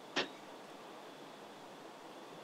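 Steady low hiss of an open microphone in a quiet room, with one brief sharp click or knock just after the start.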